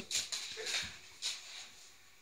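Labradors playing on a wooden floor: a few short, quiet scuffs and taps of paws as they move around.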